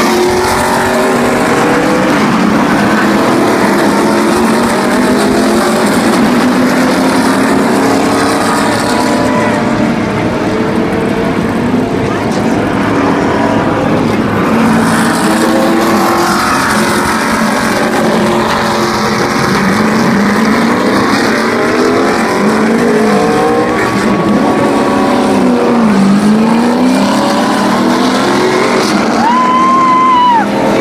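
NASCAR Cup stock cars' V8 engines running at racing speed past the grandstand: a loud, continuous drone of the pack, with engine notes rising and falling in pitch as cars go by. A brief high tone comes near the end.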